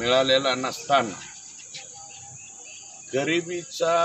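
A man speaking in short phrases. In a pause of about two seconds between them, crickets chirp faintly in the background.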